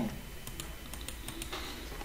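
Scattered light clicks of a computer keyboard and mouse in use, over a faint low hum.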